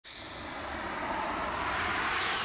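Whoosh sound effect for an animated logo intro: a rush of noise that swells steadily louder.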